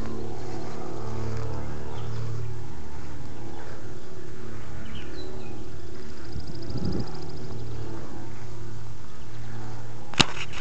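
A steady low rumble with a constant hum, with a few faint high bird chirps near the middle and a short, rapid bird trill about six seconds in.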